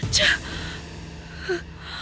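A woman gasping sharply in distress, then a second shorter gasp about a second and a half later, over a steady low note of background music.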